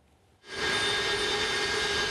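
Jet aircraft engine running: a steady rushing noise with a high whine through it, starting about half a second in after a brief near-silence.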